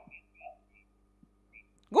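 Near silence on a telephone call-in line as the call breaks up and drops out. There is a faint steady hum and a few faint, clipped fragments of sound in the first half second.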